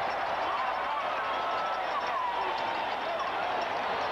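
Large stadium crowd cheering at a made field goal: a steady roar of many voices, with a few single shouts standing out.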